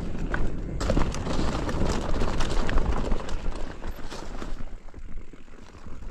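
A mountain bike riding over a leaf-covered dirt trail: the tyres crunch through dry leaves and the bike rattles, with many small clicks over a low rumble. It is loudest for the first four seconds or so, then eases as the bike slows or smooths out.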